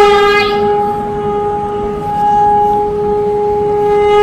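A horn blown in one long, steady note, a fanfare heralding a king's entrance.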